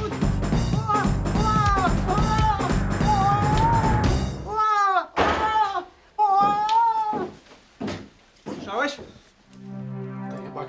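Tense background music with a heavy pulsing low end under high-pitched, strained cries of a woman being attacked. The music cuts out about four and a half seconds in, leaving her wailing cries alone, with the last one near the end.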